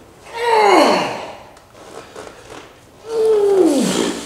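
A man groaning with strain through heavy EZ-bar preacher curls: two long groans, each about a second, falling in pitch, one near the start and one about three seconds in.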